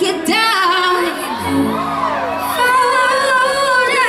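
Female singer singing live into a handheld microphone over an electronic backing track from a DJ setup. A low bass note enters about a second and a half in.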